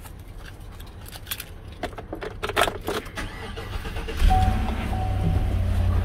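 Keys rattling and clicking at the ignition of a 2016 Chevy Silverado, then about four seconds in its 5.3-litre V8 starts and settles into a steady idle, heard from inside the cab. A dash chime tone sounds on and off over the idle.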